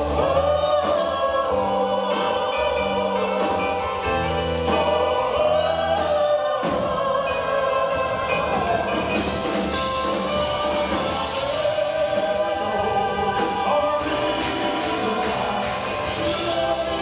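Live rock band playing a slow ballad, with drums, electric guitar and bass under long held, wavering sung notes in a choir-like blend.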